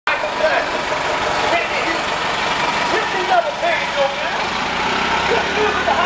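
Diesel engine of a New Flyer D60HF articulated city bus running as the bus moves off and pulls away, under steady street noise. A voice is talking over it.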